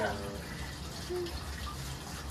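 Kitchen tap running in a steady stream into a metal wok held under it, filling the pan with water.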